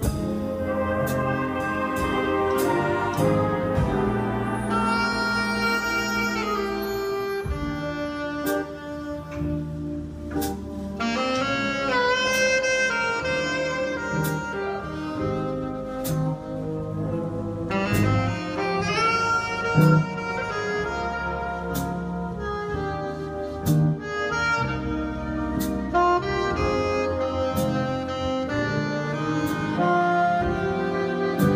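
Live jazz big band playing: a saxophone and trumpet section carrying the melody in quick rising runs over a drum kit keeping time.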